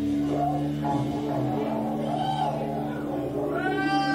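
Stratocaster-style electric guitar played live over a steady, sustained low chord, with notes sliding up in pitch and back down three times: about half a second in, around two seconds, and a longer, higher one near the end.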